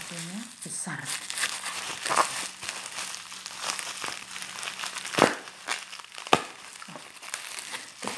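Bubble wrap crinkling and rustling as it is unwrapped by hand, with two sharper snaps about five and six seconds in.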